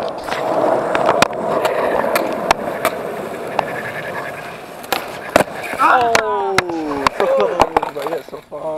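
Skateboard wheels rolling over smooth concrete, a steady rumble broken by several sharp clacks of the board, with one loud crack about five seconds in. Voices exclaim near the end.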